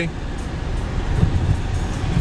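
Cabin noise of a car driving slowly over a rough, unpaved lava-rock road: a steady low rumble of tyres and suspension, with a couple of small bumps a little over a second in.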